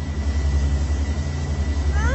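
A loud, steady low hum that pulses slightly, with a thin steady high whistle above it.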